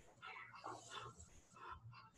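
Faint, irregular heavy breathing from people straining through a workout set.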